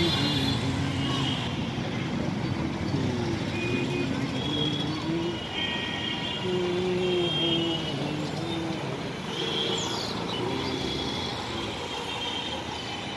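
Road traffic: a steady rumble of vehicle engines, with short pitched tones coming and going.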